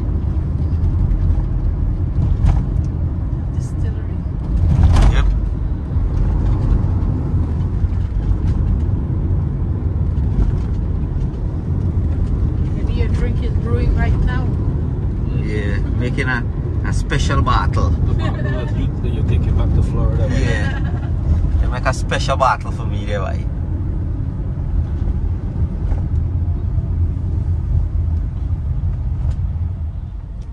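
Car driving along a road, heard from inside the cabin: a steady low road and engine rumble, with a brief louder swell about five seconds in. Indistinct voices talk over it in the middle of the stretch.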